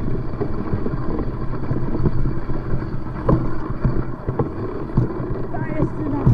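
Bike rolling fast over a snowy forest trail: a steady low rumble of tyres and wind on the microphone, with a few sharp knocks from bumps in the trail.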